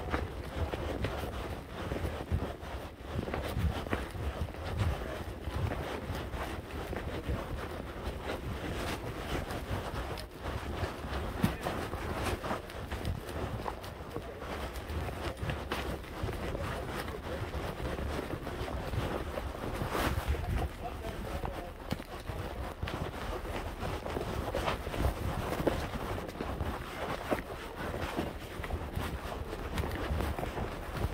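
Wind buffeting the phone's microphone, a continuous rough rumble, with irregular knocks and rustles from handling throughout.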